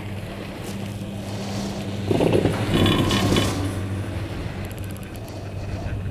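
Chairlift haul rope and chair grip running through a lift tower's sheave wheels: a steady low hum, then, about two seconds in, a louder mechanical rumble and clatter with a thin squeal that lasts about a second and a half.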